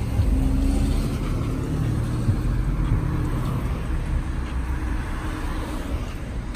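Low, steady rumble of road traffic on the street.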